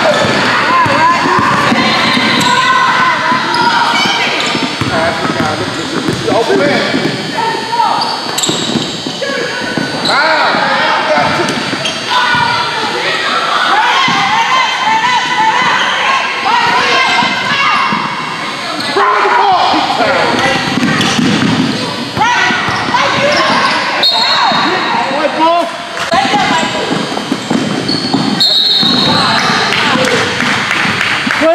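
Basketball dribbling on a hardwood gym floor, with voices shouting and calling out throughout.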